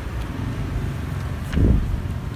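Steady low rumble of outdoor background noise, swelling briefly about one and a half seconds in.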